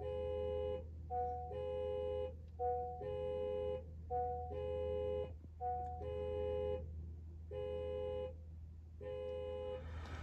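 Car's two-tone electronic warning chime repeating about every 1.5 s: a short higher note, then a longer lower one. In the last few repeats only the lower note sounds. A steady low hum runs underneath.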